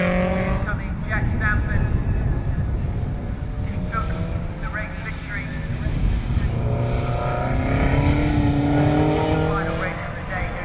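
Racing saloon car engines passing on the circuit: one car's engine note rises as it accelerates away and fades in the first second, then another car's engine climbs in pitch from about six and a half seconds in as it accelerates towards the camera.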